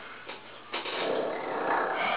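A man snoring: the tail of one snore fades at the start, and a second long, rough snore begins under a second in and carries on to the end.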